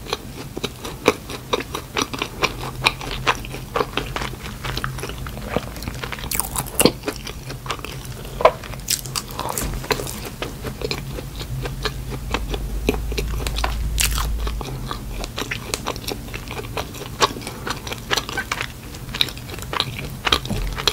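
Close-miked chewing of a soft donut, with many small wet mouth clicks and smacks and a few sharper ones. A faint steady low hum runs underneath.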